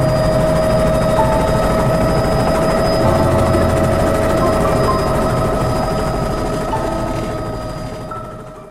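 Helicopter cabin sound in flight: a steady whine over the fast, even beat of the rotor, fading out near the end.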